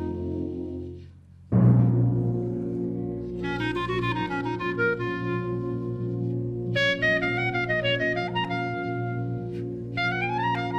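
Solo clarinet with concert wind band accompaniment. The music dips briefly about a second in, then the band comes in suddenly and loudly with a low chord. Over the band's held chords the clarinet plays moving melodic lines.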